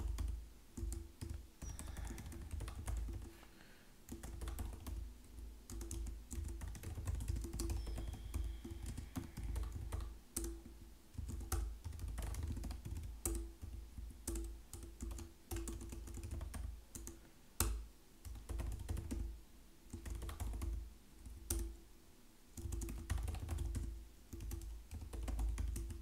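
Typing on a computer keyboard: irregular runs of keystrokes with short pauses between them.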